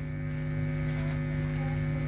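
Steady electrical mains hum with a slight buzz, from the microphone's sound system.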